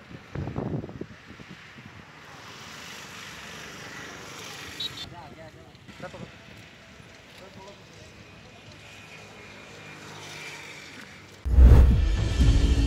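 Outdoor open-air ambience with faint background voices and a steady hiss, broken by a few low thumps near the start. Near the end, loud music cuts in abruptly.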